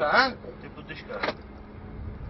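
Two short snatches of a man's speech, one at the start and one a little past halfway, over a steady low rumble with a faint even hum.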